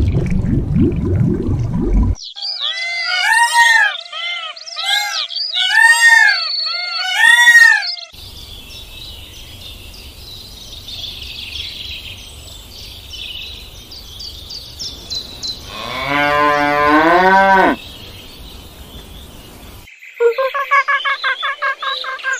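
A string of different animal calls, one after another. It opens with a low rumble, then a run of loud, repeated arching calls, then a single call that rises in pitch, and near the end a fast train of short calls.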